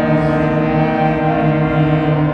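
Student concert band of flutes, clarinets, saxophones and brass playing loud held chords, with a low note repeated underneath.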